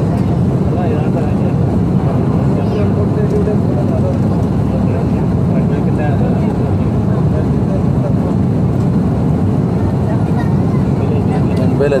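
Steady rumble of airliner cabin noise on final approach, the engines and the airflow over the extended flaps, with faint voices under it.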